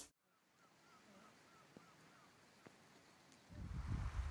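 Near silence after a sudden cut, with a faint run of small high chirps and a few faint ticks; about three and a half seconds in, wind noise on the microphone sets in and grows louder.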